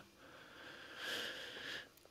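A person's faint, drawn-out in-breath, a soft sniff lasting about a second and a half and loudest in the middle.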